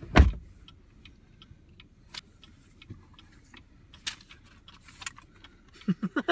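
One loud thump just after the start, then the faint low rumble of a car cabin with scattered light clicks and jingles of keys being handled.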